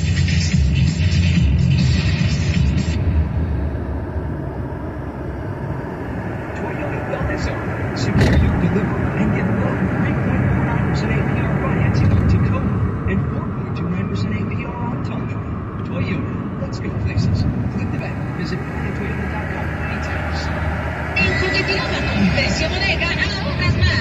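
Car cabin at highway speed: steady road and engine rumble, with the car radio playing. Music is on the radio at the start and again near the end, and voices run under the noise in between.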